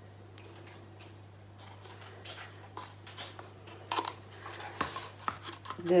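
Light, scattered clicks and taps of plastic and paper cups and a wooden stir stick being handled while acrylic paint is poured, starting about two seconds in, a few sharper taps near the middle, over a steady low hum.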